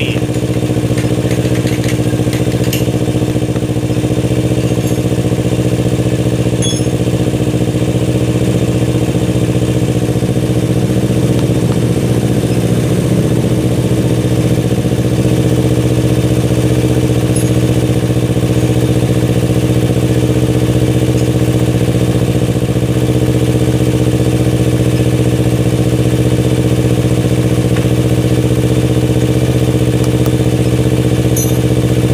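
Kawasaki Ninja 250 FI parallel-twin engine idling steadily at a cold fast idle of about 1,800 rpm, running again after a no-start caused by long disuse.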